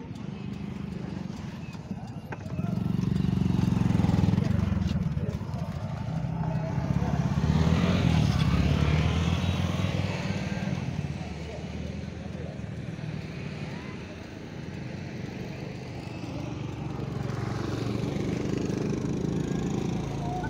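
A motorcycle engine running steadily, swelling louder a couple of times, with indistinct voices.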